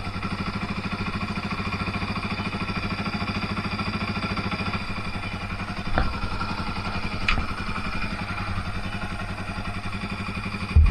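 Dirt bike engine idling steadily with an even, rapid pulse. Two sharp clicks come about six and seven seconds in.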